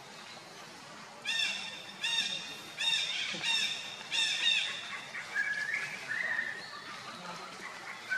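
An animal's high-pitched calls: a run of about six short calls, each rising and falling in pitch, less than a second apart from about a second in, then a few thinner rising calls in the second half.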